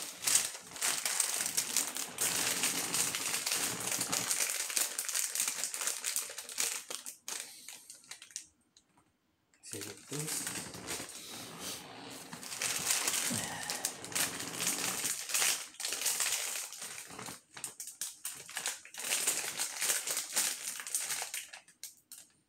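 Plastic packaging crinkling and rustling off camera, in two long spells with a short pause about eight and a half seconds in.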